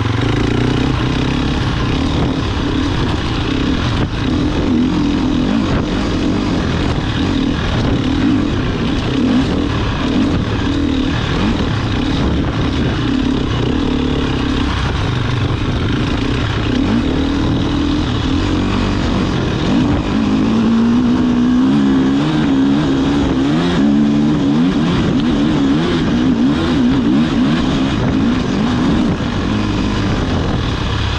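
Enduro motorcycle engine heard from an onboard camera while riding a forest trail. Its pitch rises and falls constantly with the throttle, and it revs up and down quickly in the second half.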